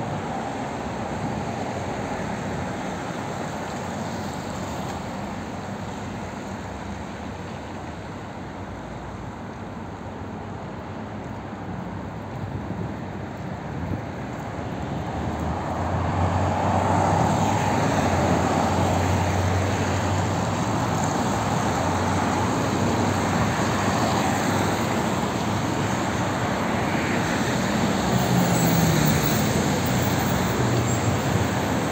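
Road traffic on a wide multi-lane city avenue: a steady wash of passing cars that grows louder about halfway through, with a deeper engine hum rising among it near the end.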